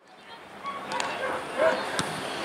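Outdoor football-ground ambience fading in from silence, with a few short, high calls and a sharp click about a second in.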